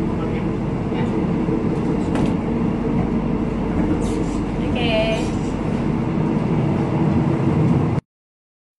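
Steady running noise of an electric airport train heard from inside the carriage: a dense low rumble with a faint steady hum. A short, wavering high-pitched sound cuts in about five seconds in.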